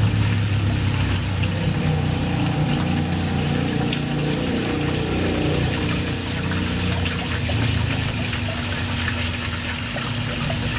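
Koi pond water splashing and bubbling where an inflow pours onto a foamy surface, with a steady low motor hum underneath.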